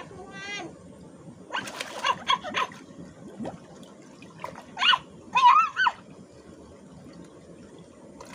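Water running and sloshing in a shallow stone-walled channel as a child moves about in it. Short splashy bursts come about two seconds in, and two brief high-pitched cries, the loudest sounds here, come near the middle.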